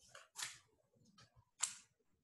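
Faint note-taking noises picked up over a video call: a handful of short scratchy clicks and rustles, the loudest one near the end.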